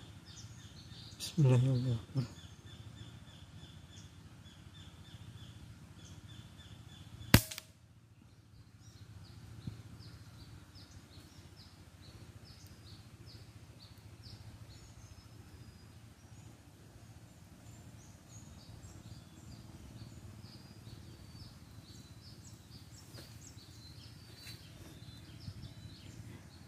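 A single sharp air-rifle shot about a quarter of the way in, fired at birds in a treetop. Faint high chirps of small birds sound throughout.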